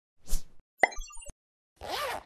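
Cartoon-style sound effects for an animated logo intro. A short whoosh is followed by a sharp pop with a quick scatter of tiny bright blips, then a swoosh that slides in pitch near the end.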